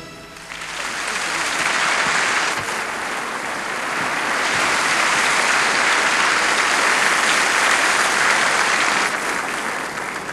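A large hall audience applauding after a song ends, building up over the first couple of seconds and then holding steady, easing slightly near the end.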